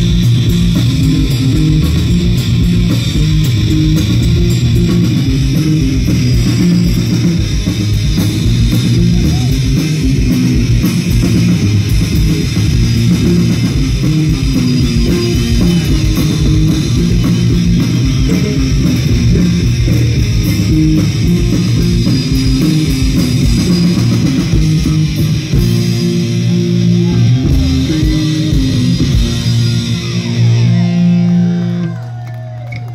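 Live punk rock band playing an instrumental passage with no vocals: electric guitar, bass guitar and drums, loud and bass-heavy. Near the end the beat thins out.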